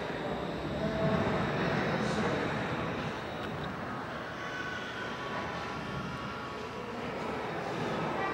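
Ambient gallery sound: indistinct murmur of distant visitors' voices over a steady rumble of room noise.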